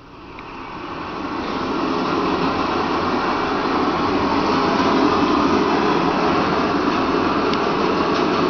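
A steady rushing, rumbling noise with no beat or melody, played over the theatre's sound system as the opening of a dance piece's soundtrack. It fades in over about two seconds and then holds level.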